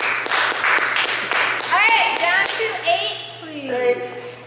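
A few people clapping for roughly the first second and a half, followed by short, high-pitched excited voice sounds.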